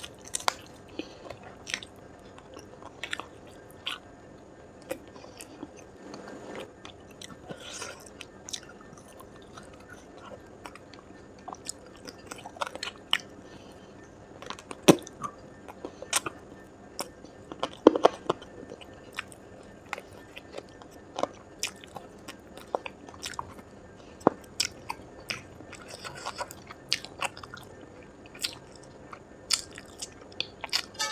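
Close-miked chewing and biting of spicy chicken tikka, wet mouth clicks and small crunches at irregular intervals, with a few louder bites around the middle.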